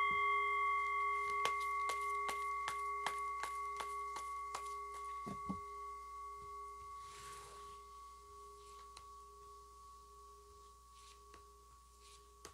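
A singing bowl, struck once just before, rings with a low tone and two or three higher overtones and fades slowly across the whole twelve seconds. Over the first half of its ring comes a run of light, evenly spaced clicks, about three a second, from the tarot deck being handled.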